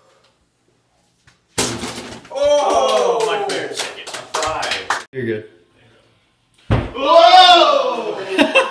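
A ball knocking into empty plastic water bottles set up as bowling pins: a sharp hit about one and a half seconds in, then the bottles clattering over amid drawn-out excited shouts. Another sharp hit near the end, followed by a loud shout.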